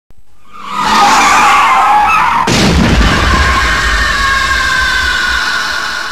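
Film sound effects of a car crash: tyres screeching, then a heavy crash about two and a half seconds in, followed by a low rumble and a long high tone that slowly falls away.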